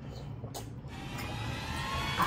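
People sucking and biting on lemon wedges, giving faint wet mouth sounds with a few short slurps about half a second in, over a steady low hum of room noise.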